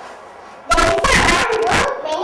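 A child's voice, loud and starting suddenly about two-thirds of a second in, played from the projected video over the hall's speakers.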